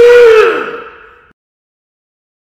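A lion's roar: one loud call that arches in pitch, holds, then falls away and fades out about a second in.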